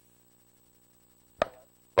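Near silence with a faint low hum, then a single sharp click about one and a half seconds in.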